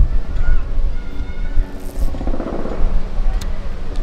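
Wind buffeting the microphone in uneven low gusts, with faint music in the background.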